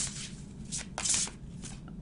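A deck of tarot cards being shuffled by hand: a few short papery riffles and flicks of the cards.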